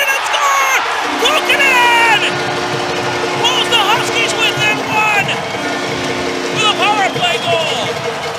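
Home arena crowd cheering and shouting just after an ice hockey goal, with a steady low horn chord sounding from about a second in. The chord breaks off briefly near the middle, resumes, and stops about a second before the end.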